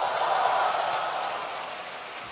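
A large audience applauding, swelling to a peak about half a second in and then slowly dying away.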